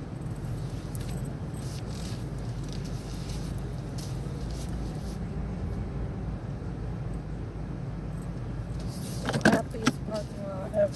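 Steady low engine and road hum inside a car's cabin. Near the end come a few louder knocks and a rattle.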